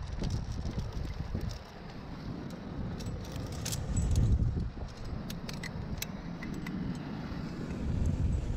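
Metal climbing gear clinking and jangling: karabiners and wired nuts on a harness rack knocking together as they are sorted and handled, in a scatter of sharp clicks that come thickest in the middle.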